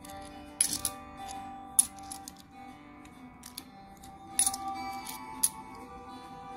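Stacked 2 euro coins clinking against each other as they are slid apart by hand: a handful of sharp metallic clinks, spaced unevenly. Background acoustic guitar music plays steadily underneath.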